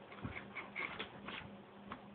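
Faint, irregular clicks and light taps, about five in two seconds, over a faint low hum.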